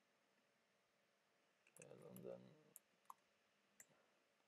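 Faint computer keyboard keystrokes, a few separate clicks in the second half, over near-silent room tone, with a brief murmured voice sound about two seconds in.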